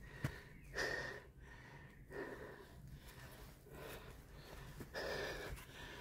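A person breathing heavily close to the microphone, a soft breath every second or so.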